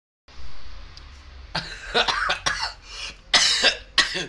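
A person's voice in about six short, loud bursts of coughing or cough-like sounds, starting about a second and a half in. Before them there is a low rumble.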